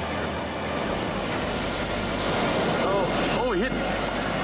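Steady rushing outdoor background noise. About three seconds in, a person's voice exclaims, its pitch sweeping down and back up.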